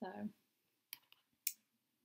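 A few light clicks about a second in, then a short scratchy tick, from small things being handled by hand.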